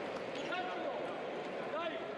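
Table tennis ball clicking off bats and the table as a doubles rally ends, with voices and the background pings of other tables in a busy hall.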